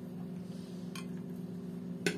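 Steady low electrical hum from a running kitchen appliance, with one light click about halfway through.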